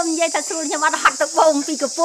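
Steady high-pitched insect drone, under a woman talking in Khmer.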